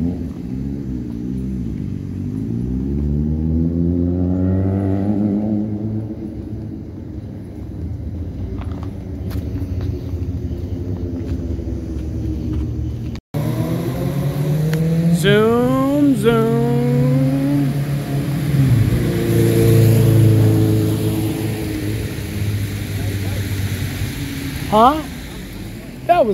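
Road vehicles driving past on a town street, their engine note swelling and fading as they pass. After an abrupt cut about halfway through, one vehicle accelerates hard, its pitch climbing, dropping and climbing again as it shifts gear, followed by a steadier engine hum.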